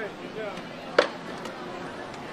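A single sharp knock about a second in, over faint background voices.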